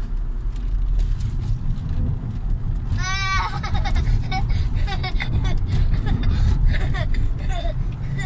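Steady engine and road noise of a car driving on a race track, heard from inside its cabin, with short bursts of voices over it.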